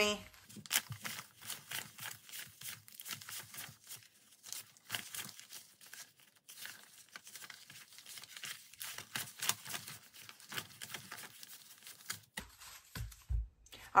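Paper one-dollar bills being counted by hand, each note flicked over with a soft papery snap, in a long irregular run. A few low knocks sound near the end.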